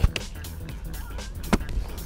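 Two sharp slaps of a rugby ball smacking into hands as passes are caught, one right at the start and one about a second and a half in, over background music.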